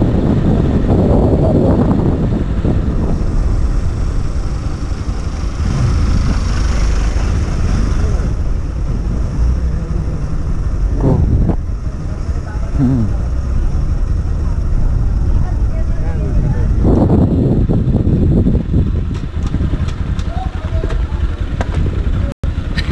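Motorcycle engine running as the bike rides along, with a heavy low rumble of wind on the bike-mounted camera's microphone. It drops a little near the end as the bike slows to a stop.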